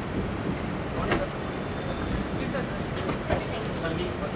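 Range Rover SUV engine idling, a low steady rumble, with a few sharp clicks: one about a second in and two close together near three seconds.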